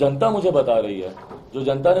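A man speaking in Hindi into press-conference microphones, with a brief pause about a second and a half in.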